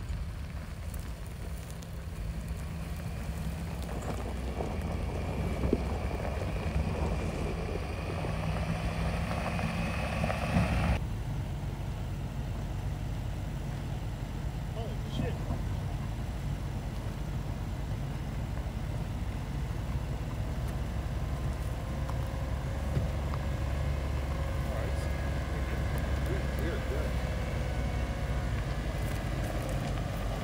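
Land Rover Discovery 5 engine running low and steady as the SUV creeps down a steep dirt hill in first gear (D1), at about 8 to 9 km/h.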